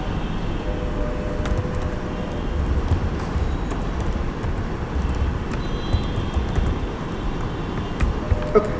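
Steady low background rumble, with scattered light clicks from a computer keyboard as code is typed.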